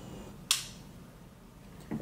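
A single sharp metallic click about half a second in from the Sig Sauer P226 Elite's trigger mechanism as it is dry-fired, with the hammer falling.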